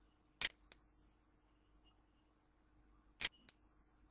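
Two clicks of a computer mouse's left button, each a press followed a quarter second later by a softer release: about half a second in and again near the end, picking points in a CAD program.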